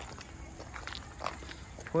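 Footsteps on an unpaved road, a few faint steps over a low outdoor background hum. A man's voice starts right at the end.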